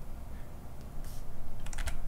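Computer mouse clicking: a quiet lull, then a quick run of sharp clicks about a second and a half in.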